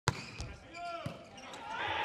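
A volleyball struck sharply by a jump serve right at the start, followed by a couple of lighter knocks and brief squeaky pitched sounds in the hall, with the overall noise rising near the end.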